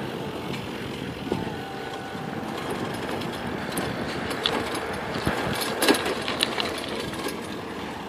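Steady road and wind noise from riding a bicycle, with a few light clicks and rattles, the sharpest about six seconds in.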